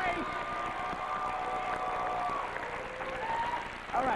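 Studio audience cheering and applauding, with long held shouts above the clapping that fade about halfway through.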